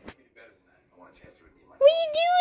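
A toddler's whiny, cat-like wail: one drawn-out cry that rises and falls in pitch, starting near the end after a mostly quiet stretch with a click at the start. It is the fretting of a small child who is stuck.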